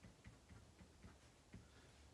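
Faint taps and scratches of a pen writing on paper: a handful of light, irregular ticks over near-silent room tone.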